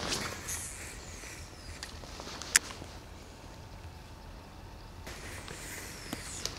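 Cast with a baitcasting rod and reel: a faint high whine falling in pitch as line runs off the spool, then a single sharp click about two and a half seconds in, over quiet outdoor background.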